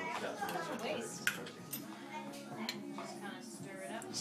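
Indistinct background conversation, with a single sharp clink of glassware about a second in.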